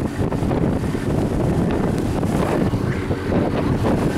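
Wind buffeting the microphone on a motorboat running at speed, over a steady engine sound and water rushing past the hull.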